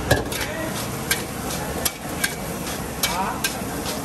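A steel spatula scraping and striking a large wok as egg fried rice is stirred and tossed over the flame, with about six sharp metal clinks over a steady frying sizzle.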